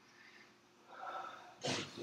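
A man's breath noises: a brief breathy sound about a second in, then a short, sharp sniff near the end, over faint room tone.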